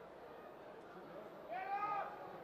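Crowd chatter around a cageside MMA fight, then about one and a half seconds in a single loud, drawn-out shout from a spectator.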